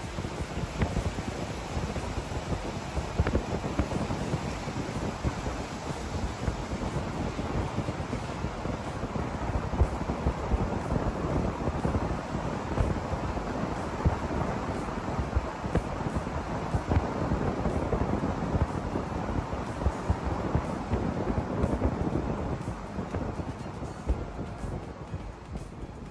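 Steady road and wind noise of a vehicle driving through a narrow rock tunnel, heard from inside the vehicle. It eases off near the end.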